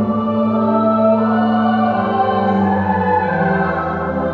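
Slow choral music: voices holding long, sustained chords that change every second or two.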